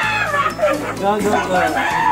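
Several excited voices talking and squealing with laughter over background music with a steady beat.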